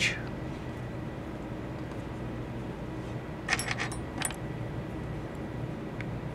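A small metal hand tool clinking: a quick cluster of light metallic clicks a little past halfway, then one more click shortly after, over a low steady background hum.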